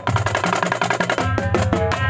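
Marching drumline playing: a fast, dense run of stick strokes on tenor drums over pitched marching bass drums.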